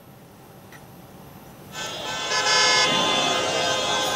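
A vehicle horn starts a little under halfway in and sounds loudly and continuously, over the noise of a crowd.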